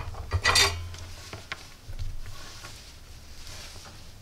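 Light handling noises of small parts and tools on a workbench: a brief scrape or rustle about half a second in, then a few faint clicks.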